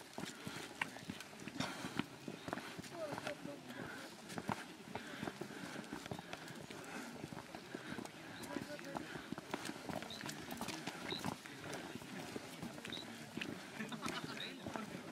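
Footsteps of several people walking on a stone-paved path, a scatter of irregular taps and scuffs, under indistinct chatter of other people.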